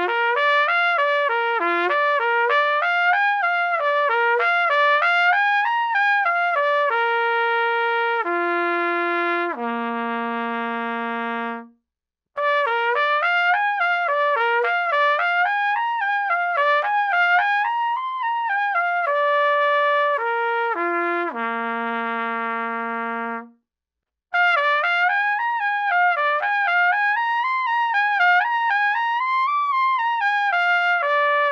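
Solo trumpet playing airstream-control exercises: quick stepwise runs that climb and fall, each phrase ending in a few long held notes that step down to a low note. It stops briefly twice, about 12 and 24 seconds in, and a new pattern starts after each break.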